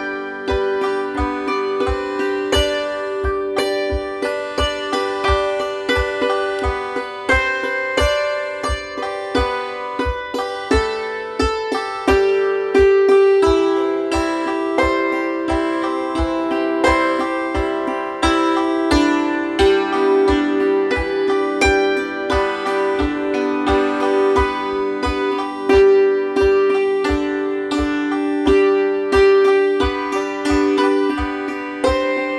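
Hammered dulcimer struck with a pair of hammers, playing rhythmic chord accompaniment with the strings ringing on. A steady low beat about twice a second runs underneath.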